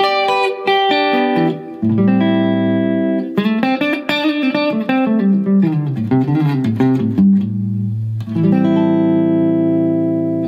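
Clean electric guitar through a Blackstar St. James EL34 50 W all-valve combo and its 1x12 Celestion Zephyr speaker, heard through a room mic: ringing chords, then a run of single notes in the middle, then chords held out near the end, with the clean channel's reverb set at 12 o'clock.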